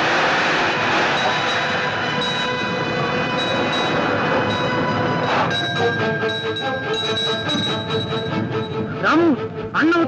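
Film soundtrack: a loud, noisy passage under a held high chord for about five and a half seconds, then rhythmic music, with a man's singing voice coming in about nine seconds in.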